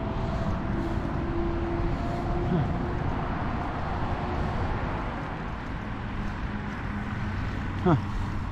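Steady outdoor background of road traffic and wind on the microphone: a low, even rumble with a faint engine hum in it.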